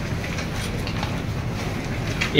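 Steady room noise with a low hum, without speech or any distinct event.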